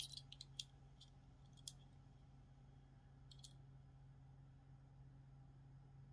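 Small, faint clicks of a die-cast toy car being handled in the fingers, its little scissor doors being flipped up, over near silence. There are a few clicks in the first two seconds and a pair about three seconds in.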